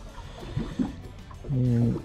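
Low background noise with faint soft handling sounds, then a man starts talking about one and a half seconds in.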